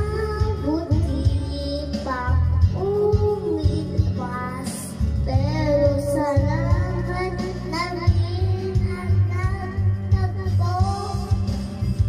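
A young boy singing into a handheld microphone over backing music, the melody wavering in pitch over a steady low accompaniment.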